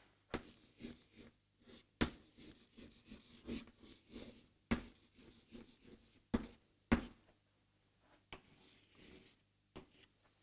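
Chalk writing on a chalkboard: sharp taps as the chalk meets the board, with short scratchy strokes between them, the loudest taps about two seconds in and again around five, six and a half and seven seconds.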